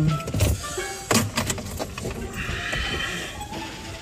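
Car seatbelt being pulled out across the chest, the webbing unreeling from its retractor for about a second after a couple of sharp knocks of handling.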